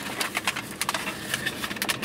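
Paper food wrapper and bag rustling and crinkling as a fried chicken sandwich is picked up and handled, a quick run of small crackles.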